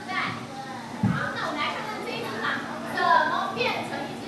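A group of young children talking and calling out together, with a short low thump about a second in.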